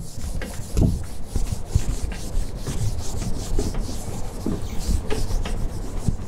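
Irregular rubbing and scraping with scattered soft knocks.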